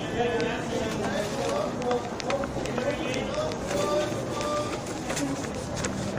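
Indistinct talking: voices of people conversing in the background, not addressed to the camera, with a few light clicks.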